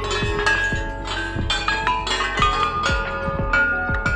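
Background music: a bell-like melody over a steady beat of deep kick drums.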